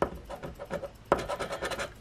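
A coin scratching the coating off a scratch-off lottery ticket in rapid back-and-forth strokes, getting denser and louder about a second in.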